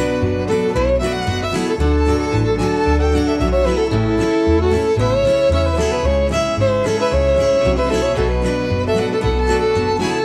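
Instrumental break of a bluegrass-style song: a fiddle carries a sliding melody over guitar and a steady bass line, with no singing.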